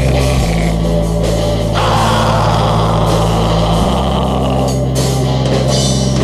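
Black metal music: distorted guitar and bass holding low chords over drums, the chord shifting about half a second in and again near four seconds. A denser, noisier layer comes in around two seconds in.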